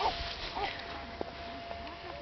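A dog making short, soft vocal sounds, a few brief calls spread across the moment.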